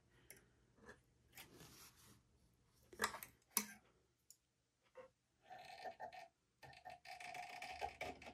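Quiet handling sounds of threading an overlocker's lower looper with tweezers: small clicks and rustles, then a longer rasping sound in the last couple of seconds.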